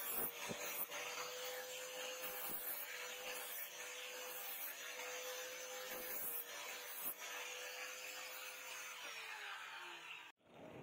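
Angle grinder grinding the edge of a steel knife blank cut from truck leaf spring: a steady motor whine over a harsh grinding hiss, with a few short knocks. Near the end the whine drops in pitch as the grinder winds down.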